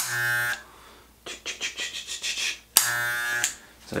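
Electric hair clippers buzzing in two short bursts, each starting sharply: about half a second at the start and again for under a second near the three-second mark. Faint irregular clicking lies between the bursts.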